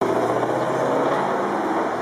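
Steady street traffic noise, with a motor vehicle's engine running close by.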